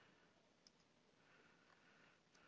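Near silence: room tone, with one faint computer-mouse click about two-thirds of a second in.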